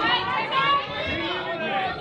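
Ringside crowd chatter: several voices talking and calling out at once, with no clear words.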